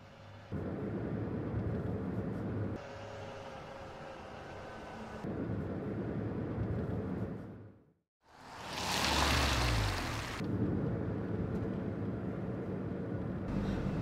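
A car driving along a wet road, with engine and tyre noise that jumps in level at each cut. The sound drops out for a moment, then a loud rumble and rush swells up and fades, giving way to steady car road noise.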